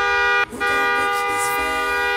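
An SUV's car horn held down in a long, steady honk. It cuts out for a moment about half a second in, then is held again.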